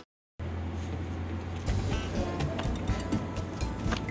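A moment of dead silence at a cut, then a steady bed of faint background music over open-air room noise with a constant low hum.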